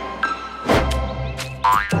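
Cartoon background music with springy boing sound effects for a pair of living boots hopping about: a soft thump about three-quarters of a second in and a rising boing near the end.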